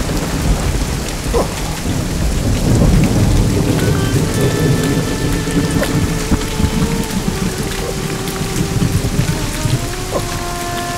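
Thunderstorm: a rumble of thunder in the first few seconds over heavy, steady rain. From about four seconds in, long held notes of background music sound over the rain.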